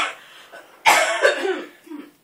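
Domestic cat making rough, cough-like chirping sounds: a short one at the start and a longer one about a second in.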